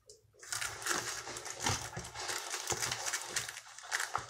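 Plastic packaging and a cardboard hair box crinkling and rustling as they are handled, starting about half a second in as a dense run of small crackles.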